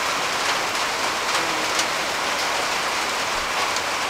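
Steady, even hiss of falling rain, with faint scattered ticks.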